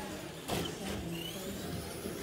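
Traxxas Slash RC short-course trucks racing: their electric motors whine, rising and falling in pitch as they speed up and slow down. A sharp knock comes about half a second in, typical of a truck striking the track's boards or pipe edging.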